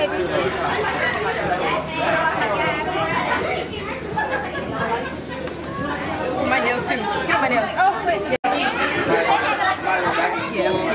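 Several people talking over one another in lively chatter, with a brief break in the sound about eight seconds in.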